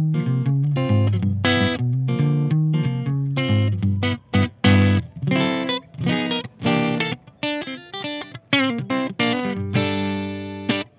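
Duesenberg Fullerton Hollow thinline hollowbody electric guitar with P90 pickups, played through an amplifier on the neck pickup. A run of chords and single notes with sharp attacks, very jazzy in tone.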